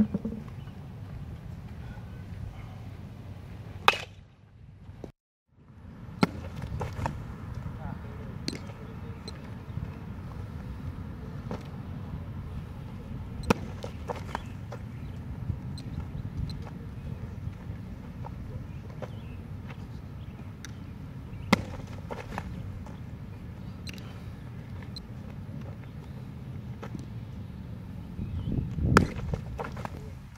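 Sharp pops of baseballs smacking into a leather catcher's mitt, one every several seconds, over a steady low rumble and faint voices. A short drop to silence comes about five seconds in.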